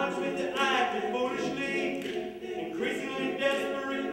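Male vocal quartet singing a cappella in close harmony, several voices holding chords together while the pitch moves.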